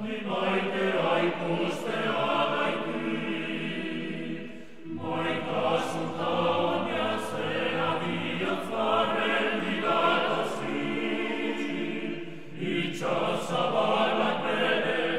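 Choir singing a Basque choral song in several layered voice parts. The phrases break briefly about five seconds in and again shortly before the end.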